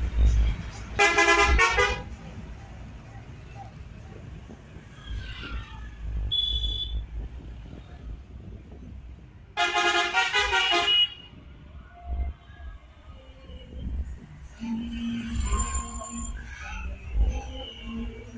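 Tourist bus horn blowing two loud blasts, each about a second long, one about a second in and one near ten seconds in, over the low rumble of bus engines and passing traffic.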